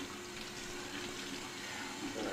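Tap water running steadily into a washbasin, a soft even hiss.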